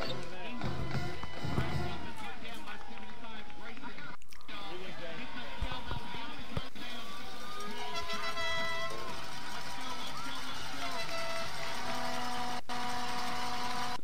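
Football stadium ambience: a steady mix of crowd voices and music, with no single sound standing out.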